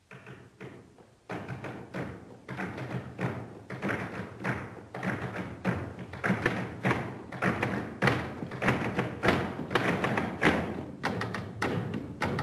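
Many hands knocking a flamenco rhythm on wooden tables. A few scattered knocks give way, about a second in, to a steady, accented rhythm that grows louder.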